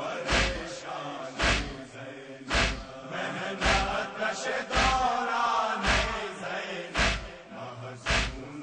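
Men chanting a noha, a Shia mourning lament, with a heavy chest-beat (matam) thud keeping time about once a second.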